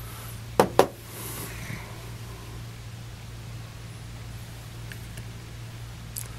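Two quick knocks, about a fifth of a second apart, as small metal motors are handled and set down on a tabletop, followed by a soft handling rustle. A steady low hum runs underneath.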